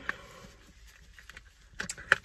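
Quiet room tone inside a parked car, with a couple of faint clicks shortly before the end.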